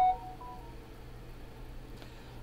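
A couple of short electronic beep tones at the start, one fainter a moment later, then quiet room tone with a low steady hum.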